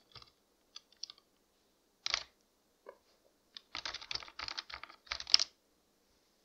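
Typing on a computer keyboard: a few scattered keystrokes, then a quick run of keys in the second half, the last strokes the loudest.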